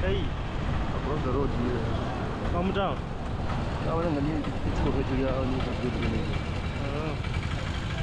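Steady low rumble of road traffic and vehicle engines on a busy street, with people's voices talking and calling out over it now and then.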